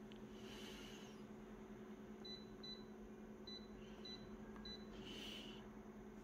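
Office photocopier's touchscreen keypad beeping: five short, faint, high beeps a fraction of a second apart as number keys and the close key are pressed to set the zoom.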